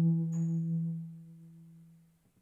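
A single held low note from the band, fading steadily and dying away near the end, with a faint click about a third of a second in.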